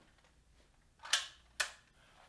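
Near silence, then two short, sharp clicks about half a second apart, each fading quickly.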